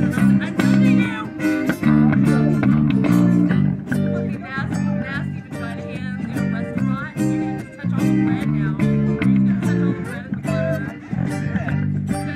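A live jam of several guitars: strummed acoustic guitars and electric guitar over a walking bass line, with a wavering lead melody that bends in pitch.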